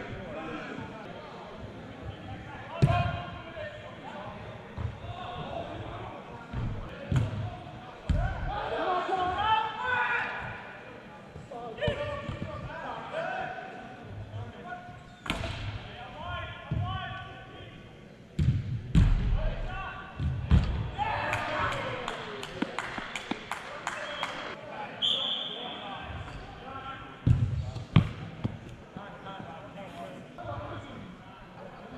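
Echoing sound of an indoor soccer game: players' shouts and voices, with repeated sharp thuds of the ball being kicked and striking the boards, a cluster of loud impacts about two-thirds of the way through.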